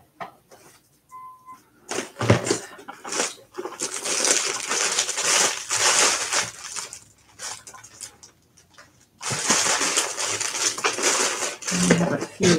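Rummaging through zip-lock plastic bags and a plastic box of beads: plastic crinkling and beads rattling in two long spells, with a short break about nine seconds in.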